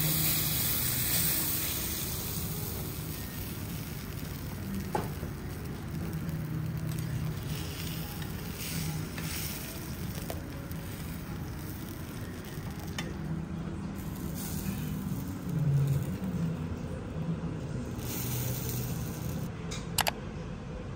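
Steady sizzling hiss of food cooking.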